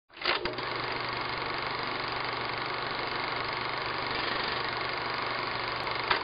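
A machine running steadily, with a constant low hum under an even noise. A few clicks come as it starts.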